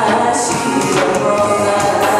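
A woman singing a melody into a microphone over amplified backing music, the voice carried through a PA system.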